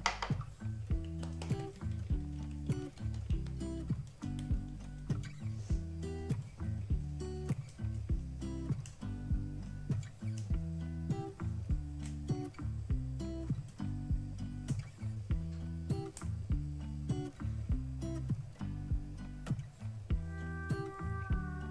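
Background music: a plucked guitar tune with a steady beat.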